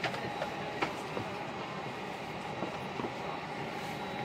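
Steady rumble of cabin noise inside an Airbus A321neo, with a few light clicks and rattles near the start and about a second in.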